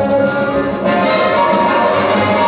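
Orchestral music with brass playing sustained chords; the harmony shifts to a fuller, brighter chord a little under a second in.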